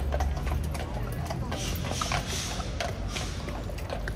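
Irregular sharp clicks and knocks over people's voices, with a brief hiss about a second and a half in.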